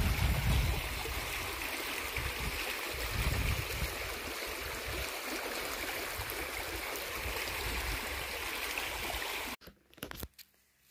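Shallow rocky creek rushing steadily over stones. Wind rumbles on the microphone in the first second, and the sound cuts off suddenly near the end.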